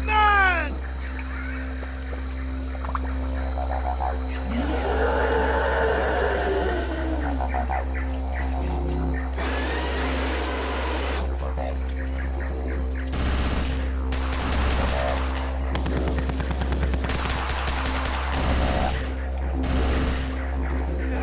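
Background music with sound effects: a long dinosaur roar that rises and falls about five seconds in, then several seconds of rapid gunfire in the second half.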